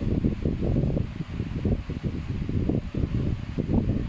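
Air buffeting the phone's microphone: a low, irregular, fluttering rumble with no voice over it.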